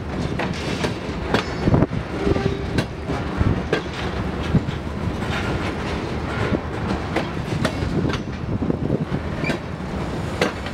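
Freight train's covered hopper cars rolling past, steel wheels on rail, with a continuous rumble and many irregular knocks and clicks.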